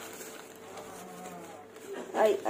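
A steady buzzing hum under light rustling of plastic carrier bags being opened and handled.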